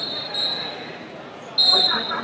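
Wrestling shoes squeaking on the mat: three high squeaks of about half a second each, the last starting near the end, over the murmur of a large hall.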